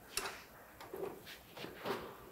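A few light clicks and knocks, about four spread over two seconds, as the draper header's reel is handled and turned by hand.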